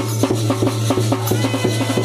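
Traditional drums beating a fast, steady rhythm of about five or six strokes a second over a continuous low drone, accompanying the ritual dance.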